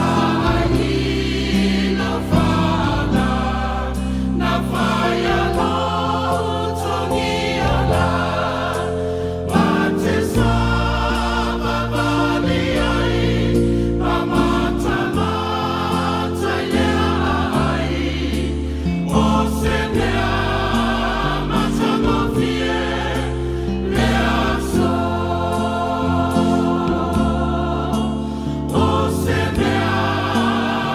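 A church choir singing a Samoan hymn, with sustained low notes under the voices.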